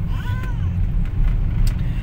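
Steady low road and engine rumble inside a moving car's cabin. A short, faint arching call sounds just before half a second in.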